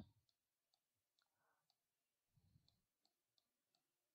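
Near silence, with faint, evenly spaced ticks about two or three a second.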